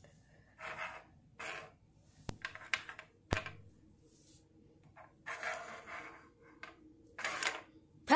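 Plastic mini football helmets clicking and knocking on a wooden tabletop as they are flicked and handled, with two sharp clicks about a second apart a couple of seconds in and short bursts of soft rustling in between.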